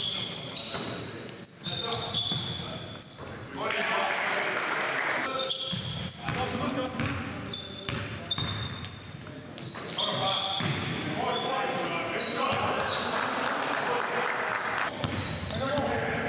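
Basketball being dribbled on a hardwood gym floor, with short high sneaker squeaks and players' voices calling out during play.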